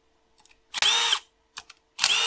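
Handheld cordless power tool spinning out bolts on the engine's cover in short whining bursts: one about a second in, and another starting at the very end, with a few light clicks between them.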